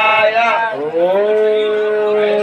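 Several long, steady horn-like tones overlapping, one of them sliding up in pitch about a second in.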